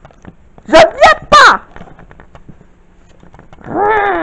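Three quick, high-pitched wordless vocal squeaks about a second in, then one longer call near the end whose pitch rises and falls.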